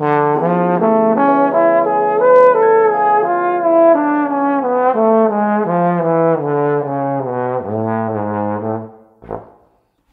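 Solo slide trombone playing a jazz practice line: a quick arpeggio up, then a scale stepping down note by note to a low held note. It stops about a second before the end.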